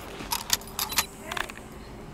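A quick run of about five sharp metallic clinks and jingles in the first second and a half.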